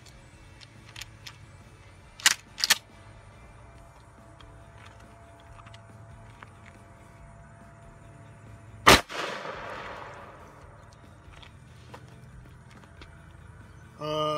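A shotgun loaded with a lightweight birdshot target load fires a single shot from close range about nine seconds in. The sharp report is followed by a noisy tail fading over about a second. Two sharp clicks come a little after two seconds in.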